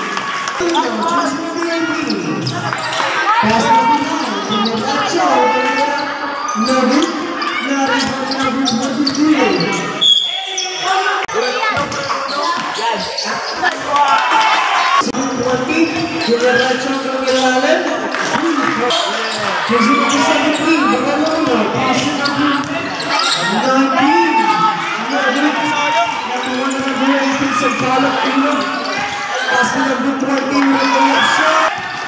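A basketball being dribbled and bounced on a hard court, with voices talking and calling out over it throughout.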